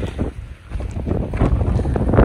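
Blizzard wind buffeting the microphone in uneven gusts, getting stronger about halfway through.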